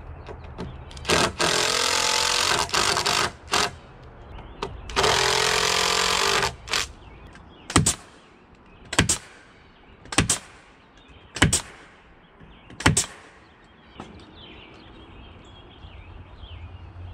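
Cordless drill driving screws into wooden stair stringers in two runs of about two seconds each, followed by six sharp knocks spaced roughly a second apart.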